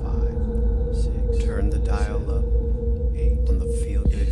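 Ambient meditation music: a steady low drone, with a few wavering, pitched calls that rise and fall over it, about two seconds in and again near the end.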